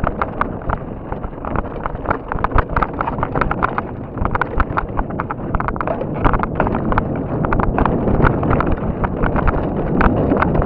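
Mountain bike rattling down a steep, loose, rocky trail: rapid irregular clattering and knocks from the tyres over rocks and the bike's parts jolting, over a steady rushing noise.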